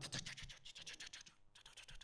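Faint, quick scratchy rustling with a short break near the end: handling noise on a handheld microphone.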